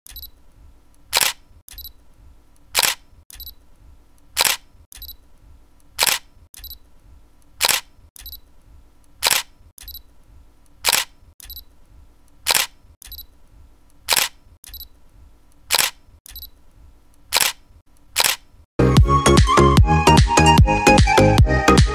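Camera shutter sound effect clicking about a dozen times at an even pace, roughly once every second and a half, each sharp click followed by a fainter second click. Near the end, loud electronic dance music cuts in abruptly.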